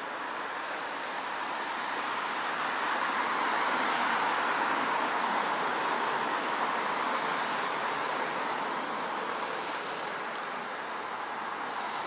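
Street traffic: a steady hiss of car tyres on tarmac, swelling as a car passes close by between about three and seven seconds in.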